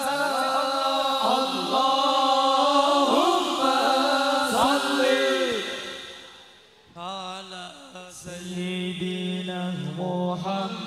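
Male sholawat singers chanting an Islamic devotional song into microphones, with long held, ornamented notes. The chant fades out about six seconds in, and a new phrase starts about a second later.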